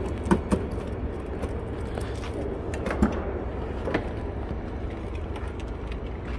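Steady low rumble of a parking garage with scattered light clicks and knocks as a plastic cooler is carried to a car and loaded in through the door.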